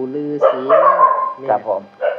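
A man talking, with a brief rough animal cry over his voice about half a second in.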